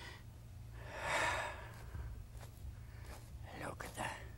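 A man's heavy breath out about a second in, then a few faint taps of an oil-paint brush dabbing foliage onto the canvas.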